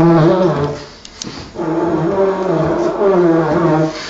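Didgeridoo played by a beginner: a droning note that breaks off just before a second in, then a second long drone from about a second and a half in until near the end.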